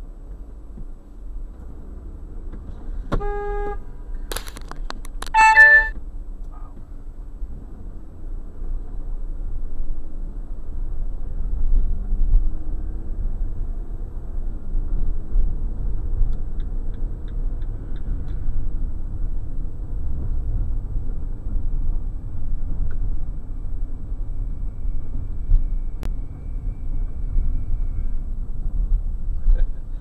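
Vehicle cab sound of a car stopped at a light, then pulling away and driving, with a low engine and road rumble that grows louder after about eight seconds. A short car horn toot about three seconds in is followed by a louder, choppier honk about five and a half seconds in.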